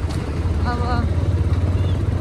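Motorcycle being ridden along a road, heard from the rider's seat: a steady low rumble of engine and road noise. A voice says one short word about a second in.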